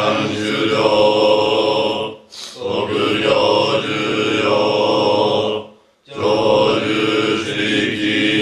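Group of Zen monks chanting a mealtime sutra in unison on a steady monotone, in long phrases broken twice by short pauses for breath.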